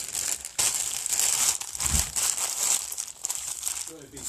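Plastic packaging crinkling and rustling as it is handled close to the microphone, with a brief lull about half a second in.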